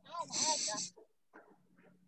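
Speech: one short spoken Vietnamese word, "rồi", heard over a video call, followed by faint scraps of sound.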